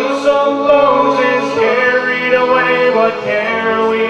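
Male vocal group singing a sea shanty a cappella in close harmony, with long held notes.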